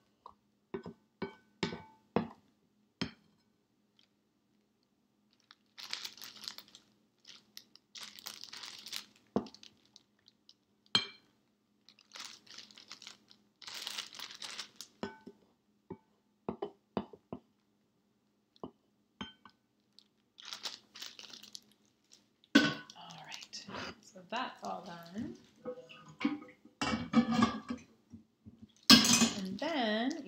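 A spoon clinks and scrapes against a glass mixing bowl while scooping mashed egg filling, in short separate knocks with bursts of crinkling from a plastic zipper bag. The sound grows busier in the last few seconds.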